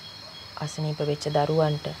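A steady, high-pitched chirring of insects, as of crickets, runs throughout. A woman's voice speaks over it from about half a second in until near the end, louder than the insects.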